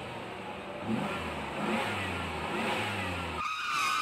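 Sound effect of a vehicle engine revving in several short rising pulses. About three and a half seconds in, a high, steady, piercing tone cuts in over it.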